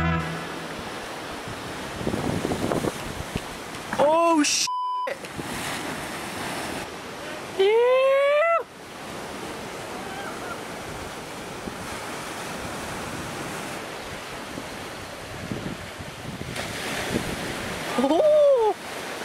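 Ocean surf breaking and washing against the rocks of a jetty, a steady rushing wash with wind on the microphone. A few short voice calls cut through it, the loudest one rising about eight seconds in.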